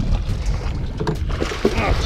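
Water splashing and sloshing at the side of the boat as a hooked musky thrashes and is scooped into a landing net, over a low rumble of wind on the microphone.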